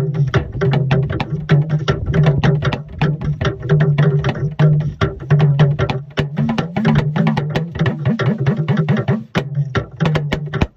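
Talking drum struck with a curved stick in a quick, steady rhythm of several strokes a second. Its low pitch bends upward and glides about two-thirds of the way through, then settles back down near the end.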